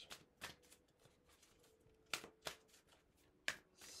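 A deck of oracle cards being shuffled by hand: faint, scattered card snaps and slides, the loudest about three and a half seconds in.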